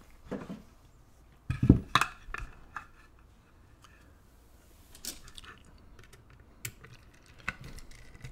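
Knocks as a wooden tray and a brass lock cylinder are put down and handled, loudest a little under two seconds in, followed by a few light, separate metal clicks as tools are brought to the cylinder.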